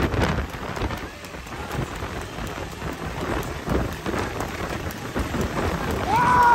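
Rushing wind on the microphone over the low running of motorcycle engines, with scattered knocks from the trotting horse and its cart on the road.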